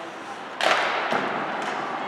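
Ice hockey puck struck hard: one loud crack about half a second in, ringing briefly in the rink, followed by two lighter knocks.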